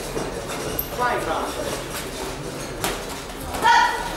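Ringside voices calling out during a boxing bout in a large hall, with a short loud shout near the end. A single sharp knock comes just before it.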